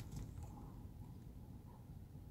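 Faint, steady low rumble of a car's cabin background, with no distinct events.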